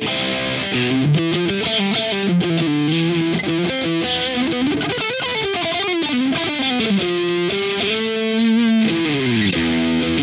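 Ibanez SA360NQM electric guitar played through an amp with a crunch (light overdrive) tone. It plays sustained chords and single-note lines with sliding pitches, and ends with a quick descending run near the end.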